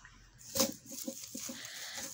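Faint rustling and a few light clicks as hands sort leaves in a plastic basket, with the sharpest click about half a second in.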